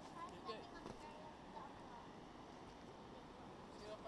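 Faint, indistinct voices of hikers over a steady low background hiss, with a few soft pitched sounds in the first second.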